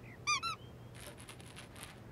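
A cartoon mouse squeaking twice in quick succession, two short high-pitched squeaks near the start, followed by faint light ticks.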